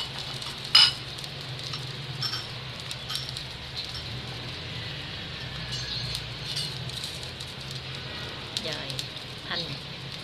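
Bánh khọt batter, quail eggs and ground pork frying in oil in the cups of a bánh khọt pan: a steady soft sizzle with small scattered crackles. A sharp click sounds about a second in.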